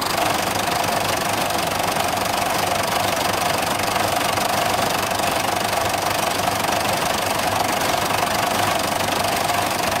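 Twin Fordson Super Major diesel engines of a Doe Triple D tractor idling steadily, with a steady high tone running through the sound.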